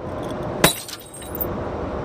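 A wooden stick strikes a glass beer bottle once, about two-thirds of a second in, and the bottle breaks, followed by a brief scatter of small glass clinks.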